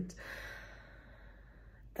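A woman's long breathy sigh, a soft exhale that fades out over nearly two seconds.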